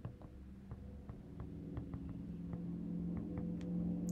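Faint ticks of a stylus tapping and writing on a tablet's glass screen, over a low steady hum that grows slightly louder near the end.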